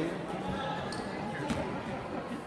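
A basketball bouncing on a hardwood gym floor, a couple of sharp bounces, with spectators' voices in the hall.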